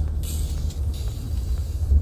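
Low road and engine rumble inside a moving car's cabin, with a short hiss just after the start and a brief low bump near the end.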